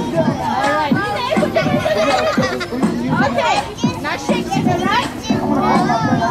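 Many children's voices talking and calling out at once, with music playing in the background.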